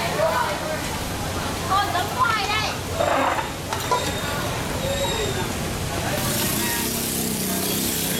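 Voices talking in a busy open-air kitchen, with a wok of noodles being stir-fried and sizzling loudly from about six seconds in.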